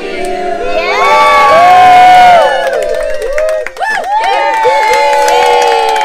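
A crowd of people cheering and whooping in long, overlapping high calls, loudest in the first half, with hand clapping coming in near the end.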